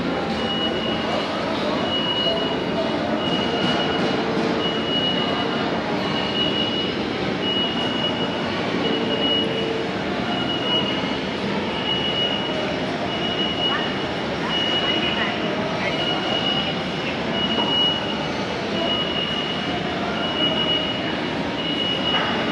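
Steady hubbub of a busy indoor shopping mall, with indistinct crowd voices, and a short high electronic beep repeating about once a second throughout.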